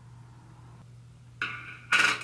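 Small hard makeup items being set down on a table, heard as a faint steady hum, then a short clatter about one and a half seconds in and a louder clink near the end.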